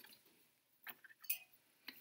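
Three faint, irregular clicks and taps from a pencil and a clear plastic ruler being picked up and laid on a sheet of paper on a wooden table, about a second in and near the end.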